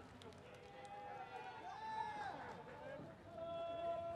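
Faint, indistinct voices of spectators and players calling out around a ballpark, with one longer held call near the end.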